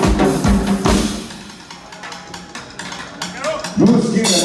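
Live band music with a drum kit pounding out a steady bass-drum beat. The music drops back about a second in to a quieter stretch with light drum taps, then the full band comes back in loudly with a voice near the end.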